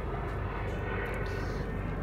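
Steady low rumble of a distant engine.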